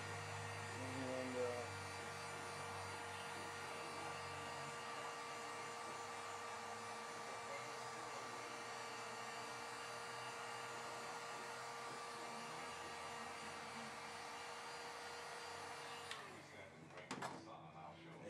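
Electric heat gun blowing hot air in a steady whine onto freshly screen-printed ink on a T-shirt to cure it, switching off about two seconds before the end.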